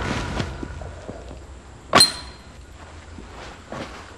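A single paintball marker shot about two seconds in: one sharp crack with a short glassy clink as it hits a glass bottle target. A few fainter knocks follow near the end.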